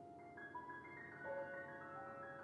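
Two amplified pianos playing soft, high notes that enter one after another and ring on over each other with the damper pedal held, over a quiet low rumble.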